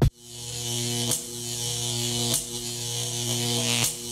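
Electronic buzzing drone of a glitch-style logo sting: a steady low buzz with hiss above it, briefly broken three times.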